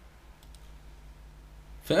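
Quiet pause with a low steady hum and two faint clicks about half a second in; a man starts speaking near the end.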